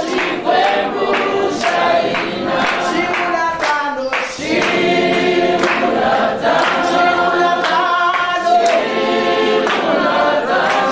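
A group of voices singing a hymn together, unaccompanied and in harmony, with a short break between phrases about four seconds in.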